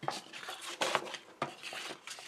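Paper and double-sided tape being handled: a few short rustling, scraping bursts as the tape strips are laid on the paper.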